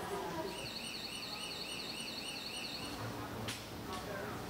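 A high electronic warbling tone that rises and falls about four times a second for a little over two seconds, then stops, over steady background noise; a sharp click follows near the end.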